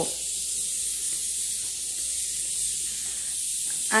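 Steady hiss of steam escaping from a stovetop pressure cooker cooking cassava.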